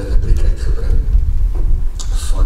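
A steady low rumble, with a man's voice heard briefly and faintly near the start.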